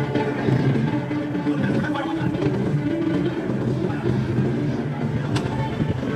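Pirate-themed show music playing loud and continuous, with a strong low bass line, and one sharp click near the end.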